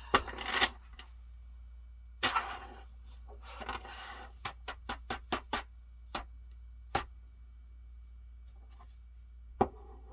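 A deck of tarot cards being shuffled by hand: three short rustling bursts of cards sliding against each other. These are followed by a quick run of about six sharp taps and then a few single clicks spaced a second or more apart.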